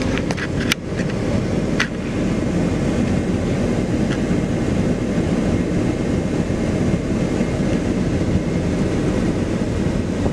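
Wind buffeting the microphone, a steady low noise, with a couple of sharp clicks in the first two seconds.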